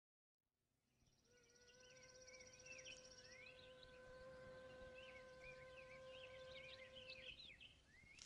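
Faint songbirds chirping, with a high buzzy trill in the first few seconds. Under them a steady held tone sounds and stops about seven seconds in.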